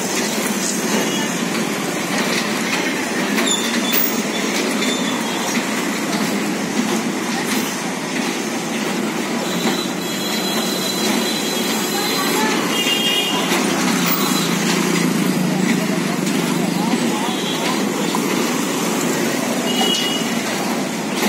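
Steady rumble of a turning carousel platform carrying ride-on toy cars, with faint high tones about halfway through and a murmur of voices.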